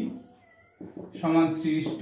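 A man's voice drawing out syllables in long, held tones, once at the start and again in the second half, with a quiet pause between.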